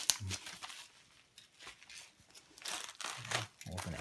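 Padded kraft-paper mailer being handled and opened, crinkling and rustling in short bursts near the start and again in the second half, with a quiet stretch in between.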